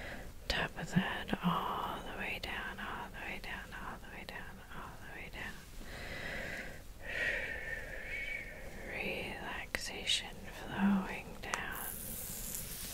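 Soft, breathy whispering close to the microphone, too faint to make out words, with small clicks scattered through it.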